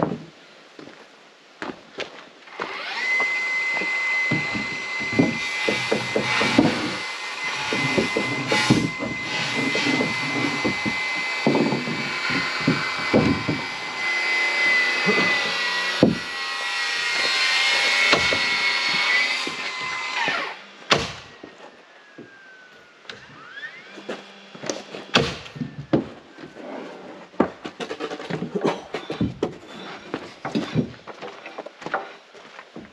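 A power tool running with a steady high whine for about eighteen seconds, starting a few seconds in and cutting off suddenly, with wooden knocks over it and afterwards.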